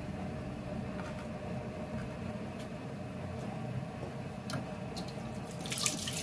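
Water running steadily from a kitchen tap, with a few light clicks and knocks.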